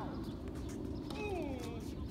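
A tennis ball is struck faintly by a racket on the far side of the court about a second in, then bounces near the end. Between the two, a drawn-out call slides down in pitch.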